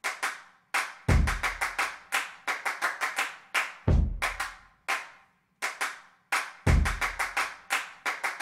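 Percussive music track built from sharp hand claps in an uneven rhythm, with a deep drum thump about every three seconds.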